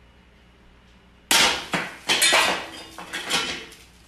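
Metal frying pans and a spatula clattering on a gas stove: a sudden loud clang about a second in, then several more clanks and clatters over the next two seconds, with some ringing.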